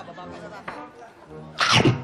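Low studio chatter, then a sudden loud vocal burst near the end that falls in pitch.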